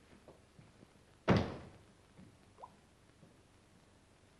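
A door shutting with one heavy thud about a second in, followed by a few faint knocks and a short squeak, over a steady background hiss.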